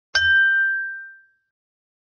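A single bell-like ding sound effect: one sharp strike just after the start that rings out and fades over about a second.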